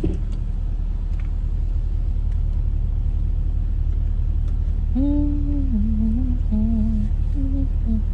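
A woman humming a slow tune in a few held notes from about halfway through, over the steady low rumble of a car idling, heard inside the cabin.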